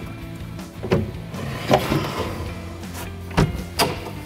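Knocks and clicks of a mini excavator's cab front glass being pushed up and latched into the roof, with a short sliding rub about two seconds in and two sharp clicks close together near the end, over background music.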